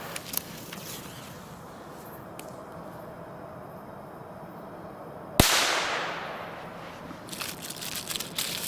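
Keller Pyro Cracker firecracker going off about five seconds in: a single sharp, loud bang whose echo fades away over a second or so.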